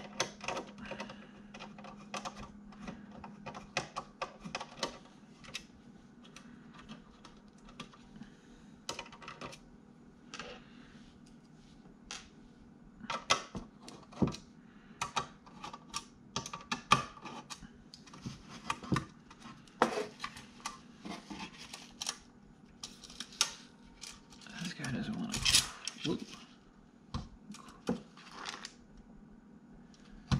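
Light metallic clicks and knocks from a metal hard-drive tray and an external drive enclosure being handled and fitted together, in an irregular run of small taps. About 25 seconds in, a longer scraping rub of metal on the casing as the tray is worked into the enclosure.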